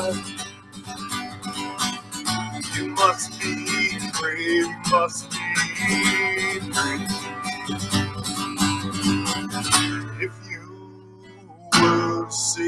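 Acoustic guitar strummed with a man singing a song. The playing drops to a quiet stretch about ten seconds in, then comes back in full just before the end.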